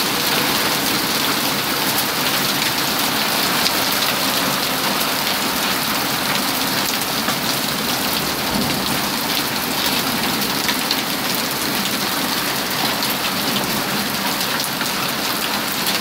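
Heavy downpour of rain mixed with pea-sized hail pelting a wooden deck, a steady dense hiss with many small sharp ticks of hailstones striking through it, sounding like popcorn at times.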